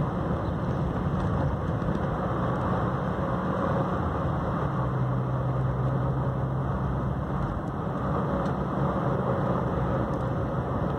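Car engine and tyre noise heard from inside the cabin while driving at steady speed: a continuous low hum over road hiss, with the engine's low note standing out more in the middle of the stretch.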